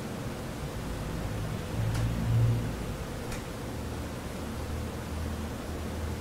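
Steady hiss and low hum of a quiet room recording, with a faint steady tone, a brief low swell about two seconds in and a couple of faint clicks.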